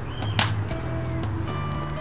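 A water balloon hitting the paving once with a sharp slap, about half a second in, without bursting.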